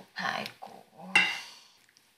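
Speech: a short line of dialogue spoken in a few quick bursts.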